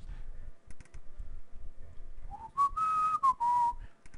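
A person whistling a short phrase of a few notes in the second half, rising at first and then settling lower on one held note. A few faint clicks come before it.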